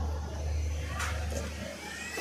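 Steady low hum and rumble of a railway coach, with a single sharp knock about a second in; the hum eases slightly near the end.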